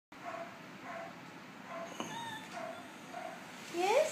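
Yorkshire terrier whining while begging for attention: a string of short, high whines, then a louder whine that rises in pitch near the end.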